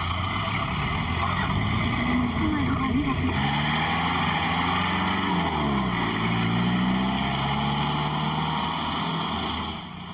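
Pickup truck engine running as the truck drives along a dirt track, its note rising and dipping a couple of times, then dropping away just before the end.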